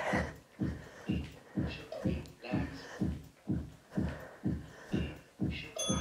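Rhythmic dull thumps, about two a second, from a person stepping and punching in place during a workout.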